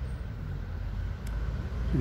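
Low, steady rumble of road traffic, with a faint engine hum.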